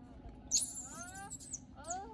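Baby monkey screaming in a tantrum on the ground: a sharp shriek about half a second in, then a run of rising squeals, with another rising squeal near the end.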